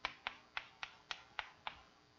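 Chalk tapping on a blackboard while writing: a quick, even run of sharp taps, about seven in two seconds.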